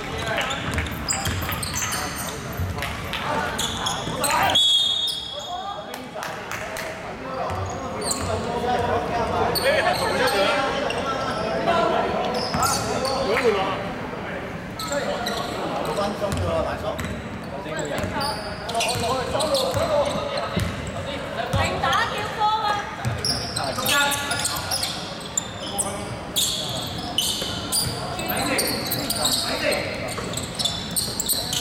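Basketball game in a large echoing gym: the ball bounces on the hardwood floor amid players' voices and shouts, with a brief, shrill referee's whistle about four seconds in.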